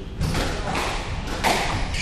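Squash rally: the ball cracks off rackets and the court walls about three times in two seconds, and the strike about one and a half seconds in is the loudest.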